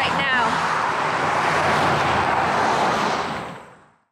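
Steady noise of cars going by close at hand on a busy road, a mix of tyre and engine noise, fading out near the end.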